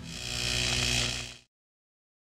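A hissing buzz that swells for about a second and then cuts off abruptly, with a few steady low notes beneath it.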